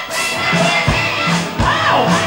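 Rock band playing live at full volume: electric guitars, bass, drums and a lead vocal, with the kick drum thumping through the mix.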